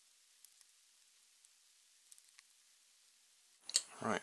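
A few faint, light clicks of small plastic parts being handled: the air bottle, its cap and the clear motor housing. They are spaced irregularly through the first two and a half seconds, against near silence. A man's voice begins just before the end.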